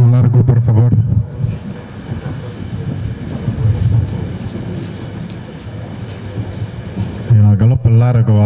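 A man's voice for about the first second and again near the end, with a steady, quieter rushing background noise in between.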